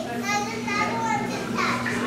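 Background chatter of museum visitors, children's voices among them, over a steady low hum.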